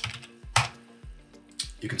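A few separate clicks from a computer keyboard and mouse, the loudest about half a second in.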